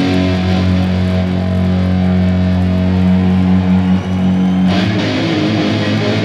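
Distorted electric guitar solo played live through a stack of amplifiers: a low note held and sustained for over four seconds, then quicker notes near the end.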